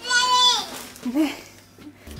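A toddler's high-pitched squeal, held for about half a second and falling away at the end, followed about a second in by a shorter, lower voice sound.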